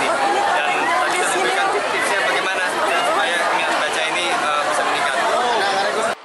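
Speech only: a man talking into reporters' microphones over the chatter of a crowd around him.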